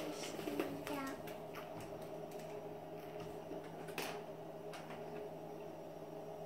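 Faint, scattered clicks of small plastic Lego minifigure parts being handled and pressed together, the sharpest click about four seconds in. A child's short vocal sound comes about a second in.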